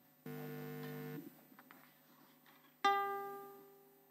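A steady held chord lasting about a second that cuts off abruptly, then, about three seconds in, a single plucked string note that rings out and fades.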